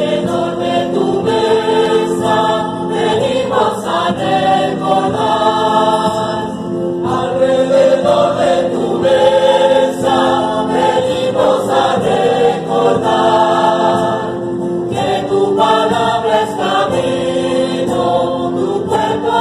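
Church choir singing a Spanish entrance hymn in a reverberant nave, with steady held low notes of accompaniment underneath.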